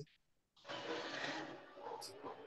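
Steady hiss of background noise on a video-call microphone, cutting in suddenly after a moment of dead silence and slowly fading.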